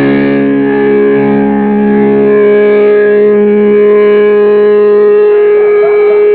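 Distorted electric guitars through amplifiers holding a sustained chord that rings on without drums, with a steady higher tone swelling in about halfway through.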